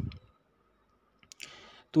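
A pause in a man's voice-over narration. The last word trails off at the start, then faint mouth clicks and a short, soft intake of breath come before he speaks again.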